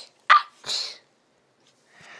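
A short, sharp vocal yelp followed by a breathy hiss, then silence for the second half.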